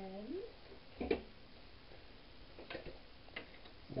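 A sharp knock about a second in, then a few faint clicks near the end, as of kitchenware being handled around a frying pan.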